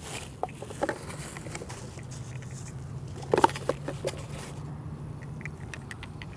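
Plastic wrap and foam packing rustling and crinkling in short bursts as a bobblehead is pulled out of its packaging, louder for a moment about three and a half seconds in. A steady low hum runs underneath.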